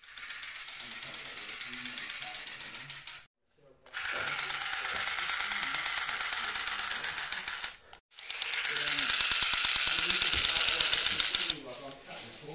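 Automatic gunfire sound effect: a rapid, evenly spaced rattle of shots in three long bursts of about three to four seconds each, broken by short, abrupt silences.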